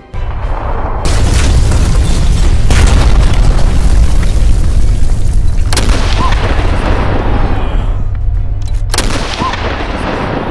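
Heavy battle explosions: a loud, deep continuous rumble with crackle throughout, and two sharp blasts about six and nine seconds in, each trailing off.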